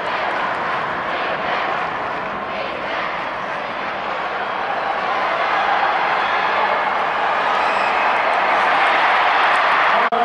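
Stadium crowd noise at a football game: a dense roar of many voices that swells toward the end as a long pass is thrown downfield.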